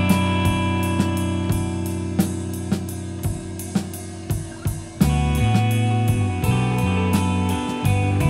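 Instrumental post-rock band music: a drum kit keeps a steady beat with cymbal and hi-hat strokes about twice a second, under sustained bass and guitar chords. The band thins and drops in level, then comes back in full and loud about five seconds in.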